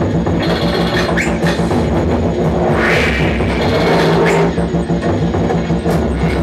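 Live electronic music played on electronic instruments: a dense, steady low drone under a pulsing rhythm, with a noisy swell rising about halfway through.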